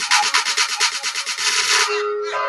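Song break made of a fast, dense run of noisy beats with no melody, building in brightness and cutting off near the end as the tune comes back in.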